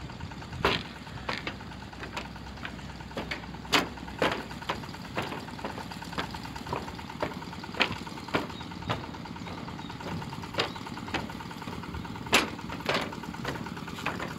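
Footsteps on the steel deck plates of a railway bridge, irregular sharp taps at walking pace, one to two a second, over a steady low background rumble.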